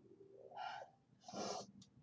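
Two short breathy vocal sounds, a gasp and a hooting 'ooh', about half a second and one and a half seconds in.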